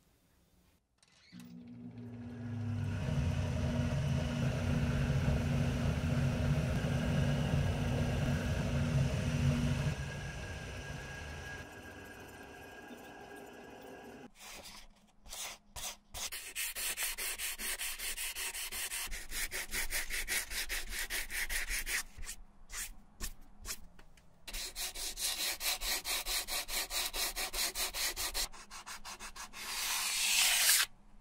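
A machine hums steadily for several seconds. Then sandpaper is rubbed back and forth over a Red Wing boot's white wedge midsole in fast, rasping strokes, with brief pauses.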